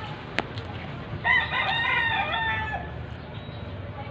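A rooster crows once, starting about a second in: one call of about a second and a half that falls away at its end. A single sharp click comes just before it.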